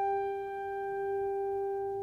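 Orchestral music: a single note held steady without vibrato, softening near the end.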